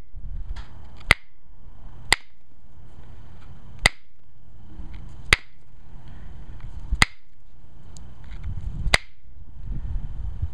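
Copper-tipped pressure flaker popping flakes off the edge of an Alibates flint preform: six sharp snaps, one every second or two.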